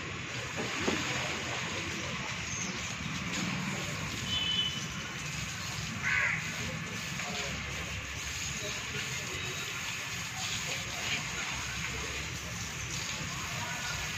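Water from a garden hose spraying and splashing steadily onto a bull's hide and the wet concrete floor. A crow caws once about six seconds in.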